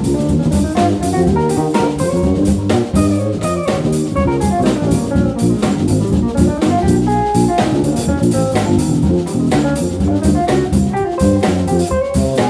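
A live instrumental trio of electric guitar, electric bass and a Gretsch drum kit playing a jazzy groove, with the guitar carrying a melodic line over a steady beat of drums and cymbals.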